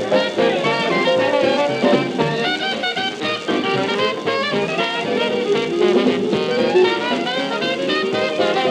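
Chicago-style Dixieland jazz band of cornet, clarinet, trombone, piano, string bass, drums and rhythm guitar playing together at a swinging tempo, several horn lines weaving at once. The sound is a thin, lo-fi copy from a 1954 television broadcast recorded at home onto acetate disc.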